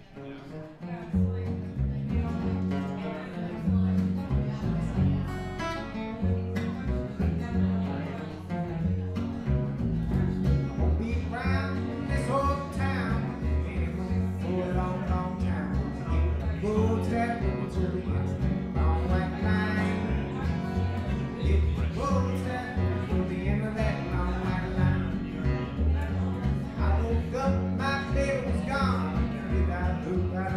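A live band playing music, starting up about a second in after a brief quiet moment, with a strong bass underneath.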